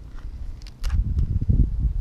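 Wind rumbling on the microphone, growing much stronger about a second in, with a few sharp clicks over it.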